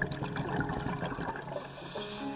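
Water gurgling and splashing: a dense patter of small bubbling and droplet sounds, with only faint music beneath.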